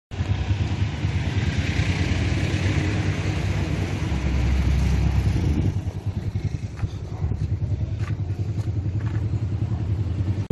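A motor vehicle's engine running, louder for the first five to six seconds and then dropping to a lower steady rumble, with a few faint clicks near the end.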